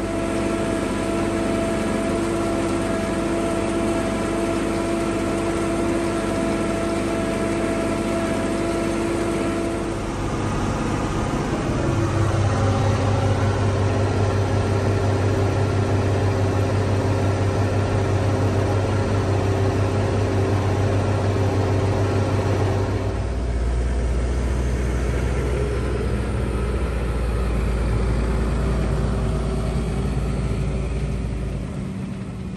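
Tractor engines running steadily under load, driving silage baggers as chopped triticale is unloaded into them. The engine note shifts abruptly a few times, about a third of the way in and again near three quarters through.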